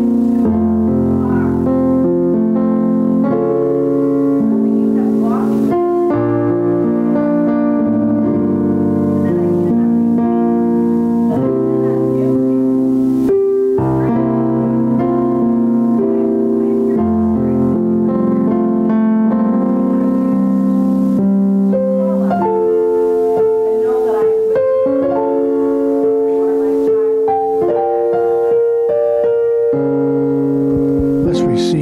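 Electric keyboard in a piano sound playing slow, sustained chords that change every second or two, as soft worship music.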